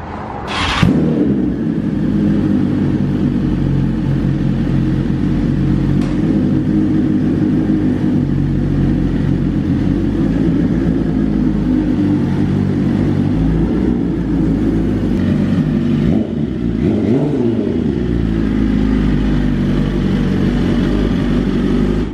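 BMW S1000RR's inline-four engine catching about a second in and then idling steadily, with a brief rise and fall in pitch past the middle.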